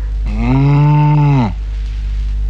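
A cow mooing once: a single moo lasting a little over a second that drops in pitch as it ends.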